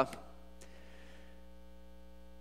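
Steady electrical mains hum, a set of unchanging low tones.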